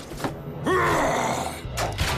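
A voice groaning twice: a short sound just after the start, then a louder one held for about a second, rising and then falling in pitch, over background music.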